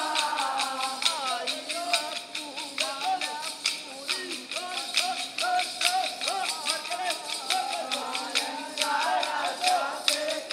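Kolkali dance sticks: short wooden sticks struck together in a quick, steady rhythm by a group of dancers, clacking sharply over a sung melody.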